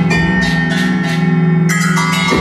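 Live instrumental improvisation from a guitar, bass and two-percussionist band: a held low note with struck, ringing pitched tones sustaining above it, a new one entering near the end.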